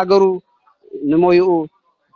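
A man's voice: a short syllable at the start, then one long drawn-out vowel about a second in.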